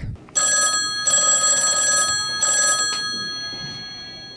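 Telephone bell ringing in three bursts, the third one short, then the bell's tone rings on and dies away slowly.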